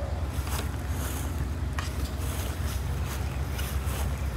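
Outdoor wind buffeting the microphone: a steady low rumble with a faint hiss above it and a couple of faint ticks.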